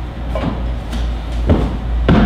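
A few heavy footsteps thudding on a wooden stage floor, one about half a second in and a louder one about a second and a half in, over a steady low electrical hum.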